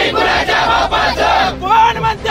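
A crowd of men shouting slogans together in a loud, rhythmic chant.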